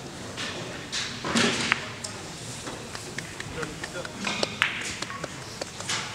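Carom billiard balls clicking sharply against each other several times, the loudest strike a little before the end, over chatter in a large hall.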